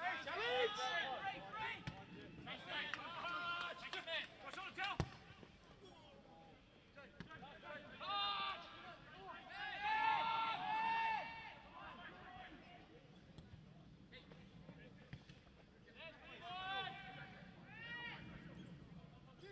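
Football players shouting calls to each other on the pitch, in several short bursts of raised voices, with a few sharp knocks, the loudest about five seconds in.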